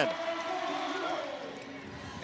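Basketball arena crowd noise: a steady murmur of many voices, fading slightly through the stretch.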